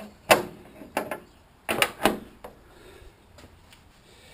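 Steel bonnet of a Ford Escort Mk1 being raised and propped on its stay rod: a series of sharp metallic clunks and clicks, most of them in the first two and a half seconds.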